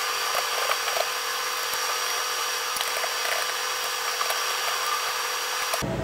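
Screws being driven out of a mini PC's cooling fan assembly with a screwdriver: a steady hum and noisy whir with light clicks and scrapes of metal and plastic, cutting off abruptly near the end.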